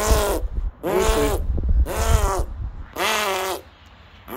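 A chimpanzee calling in a series of short hoots that rise and fall in pitch, about one a second, four in all.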